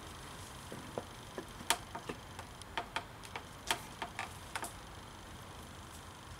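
A dozen or so sharp, irregular clicks and light knocks, between about one and five seconds in, as a trolling motor's propeller is worked onto its shaft and drive pin. It is a tight fit and goes on hard.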